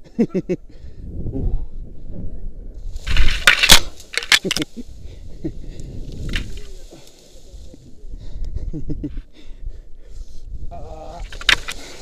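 Wind rumbling over a body-worn camera's microphone as a rope jumper swings on the rope. About three seconds in come loud crackling and rustling bursts as he brushes through bushes and reeds. Laughter comes near the end.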